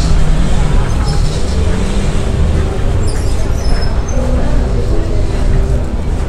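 A steady low rumble with indistinct voices mixed in and no single distinct event.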